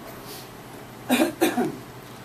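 A person coughing twice in quick succession, a little after a second in.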